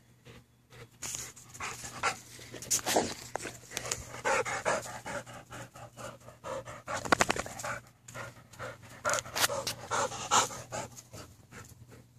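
Rottweilers panting in short, uneven bursts, with a quick run of rapid breaths about seven seconds in.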